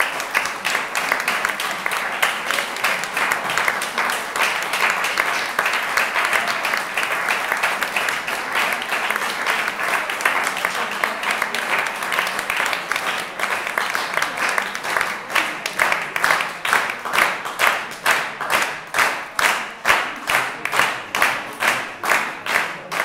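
Audience applauding after a harp performance. About two-thirds of the way through, the scattered clapping falls into unison, a steady rhythm of about two to three claps a second.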